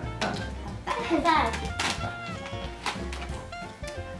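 Young children's voices talking and laughing over a background music bed.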